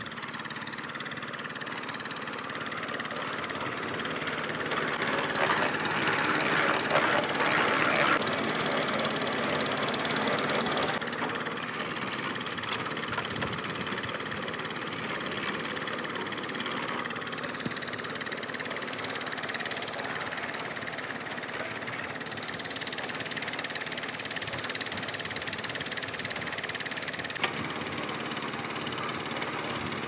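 Engine-driven drum concrete mixer running steadily, with stone aggregate tumbling in the turning drum. It is loudest from about four to eleven seconds in, and the sound changes abruptly a few times.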